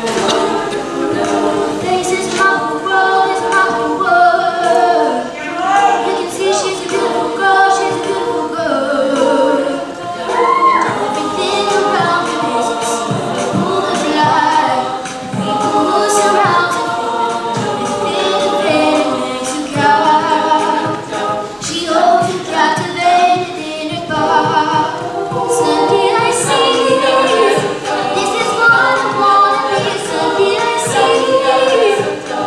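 All-female a cappella group singing a pop song, a lead voice over layered backing harmonies, with vocal percussion keeping a steady beat.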